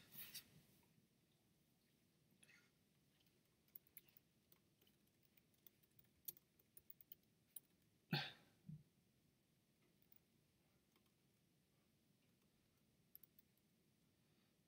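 Near silence: quiet room tone with faint scattered clicks. A louder knock comes about eight seconds in, followed by a softer one.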